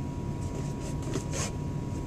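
Steady low background hum, with a few faint rustles of paper and a cardboard gift box being handled a little over a second in.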